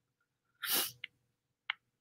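A person's short breath into a headset or laptop microphone during a pause in speech, followed by a couple of faint mouth clicks.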